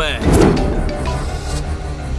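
Film soundtrack: a sudden noisy whoosh swelling about half a second in, over a low, steady background-score drone.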